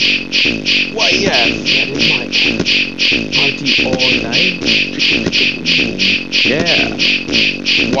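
Beatbox-style drum loop made from mouth-sound samples in FL Studio: steady mouth hi-hat ticks about three a second over a mouth kick and snare at 90 BPM. Short recorded vocal snippets ('party all night', 'why') are triggered over the loop about a second in, around four seconds, and near the end.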